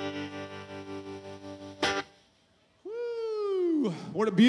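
An electric guitar through effects pedals holds one steady sustained note for about two seconds, cut off with a sharp click. After a short gap a single tone slides downward in pitch near the end.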